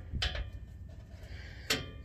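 Channel-lock pliers squeezed on the steel prong of an exhaust hanger, giving a few faint clicks over a low rumble.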